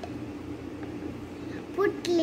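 Steady low background hum and hiss with no distinct event, and a child's voice starting briefly near the end.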